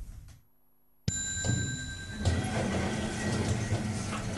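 An electronic lift chime that starts suddenly about a second in, holds a steady high tone for about a second and cuts off. It is followed by the steady running noise and low hum of a lift car.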